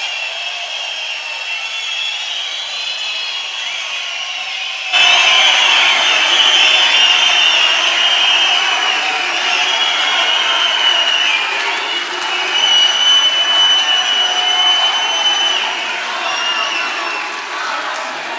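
Large indoor crowd applauding and cheering, a dense sustained din that jumps suddenly louder about five seconds in.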